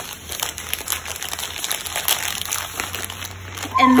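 Plastic candy bags crinkling as they are handled and rummaged out of a cardboard shipping box, a run of irregular crackles.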